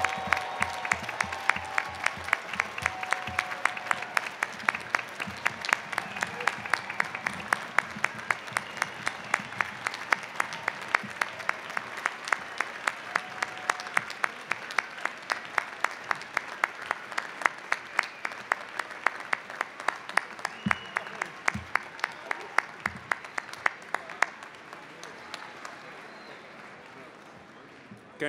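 Large audience applauding, with one set of sharp, regular claps close by standing out above the crowd; the applause dies away over the last few seconds.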